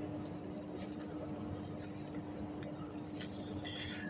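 A steady low hum with a few faint, soft clicks from the membrane keys of a Schneider EOCR motor protection relay being pressed to step through its settings.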